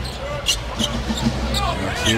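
A basketball being dribbled on a hardwood court: several sharp, irregular bounces over a steady arena crowd murmur.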